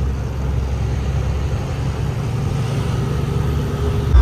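Truck engine running steadily with road noise, heard from inside the cab while driving.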